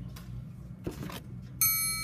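Quiet room hum with faint rustles, then a high ringing tone of several pitches at once that starts suddenly near the end and holds steady.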